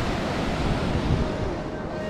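Sea waves breaking and washing ashore in a steady surf roar, with wind rumbling on the microphone.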